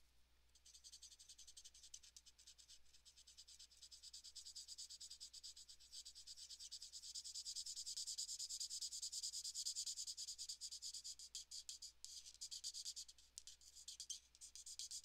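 Marker nib rubbing on paper in quick, repeated colouring strokes: a faint, dry, scratchy hiss. It starts about half a second in, grows louder toward the middle and eases briefly near the end.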